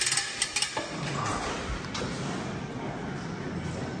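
A few light metallic clicks from a just-removed bicycle pedal and the bike's crank being handled in the first second, then quieter steady mechanical handling noise.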